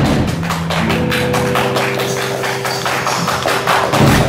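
Live band playing: drum kit and cymbals keep a fast, steady beat, about five hits a second, over held low instrument notes, with a louder hit right at the end.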